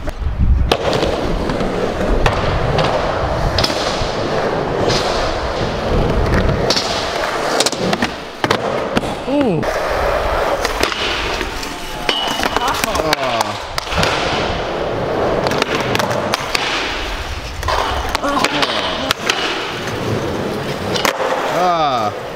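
Skateboard wheels rolling on a concrete skatepark floor in a continuous rumble, broken by sharp clacks of the board popping and landing and a grind along a low metal rail.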